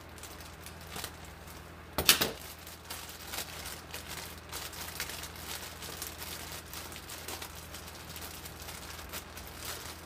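Plastic baggie crinkling and rustling as it is handled and opened, with one loud crackle about two seconds in.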